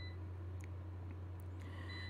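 Low steady electrical hum with faint hiss: the recording's room tone, with nothing else standing out.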